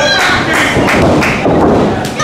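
Thuds of wrestlers' bodies hitting a wrestling ring's canvas, with voices in the hall.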